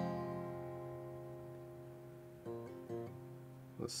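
Acoustic guitar: one chord strummed and left to ring, slowly fading, with a few quick picked notes about two and a half seconds in.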